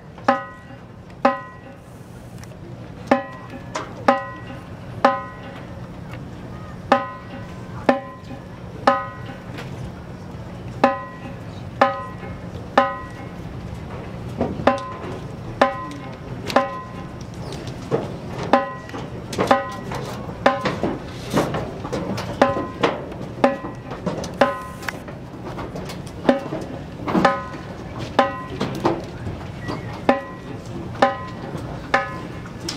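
A percussion instrument ticking a marching tempo: sharp pitched clicks about once a second, mostly in runs of three with short gaps, coming thicker and less evenly in the second half. A low steady hum runs underneath.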